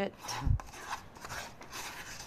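Metal spoon scraping thick mayonnaise dressing out of a ramekin into a stainless steel bowl of chopped broccoli, an irregular rasping scrape, with one dull thump about half a second in.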